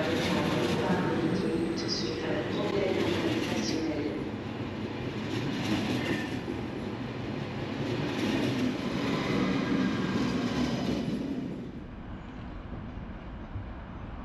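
SNCF TGV 2N2 Euroduplex double-deck high-speed electric train pulling out of the station and passing right alongside, its wheels and running gear rumbling and clattering on the rails. The sound drops away sharply about twelve seconds in as the last cars clear.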